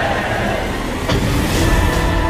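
Film trailer soundtrack: a heavy low rumble, a sharp hit about a second in, then sustained music tones.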